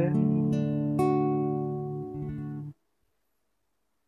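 Acoustic guitar playing a chord accompaniment in A major: a few chords struck about half a second apart ring and fade, with lighter strums just after two seconds, then the sound cuts off suddenly a little before three seconds in.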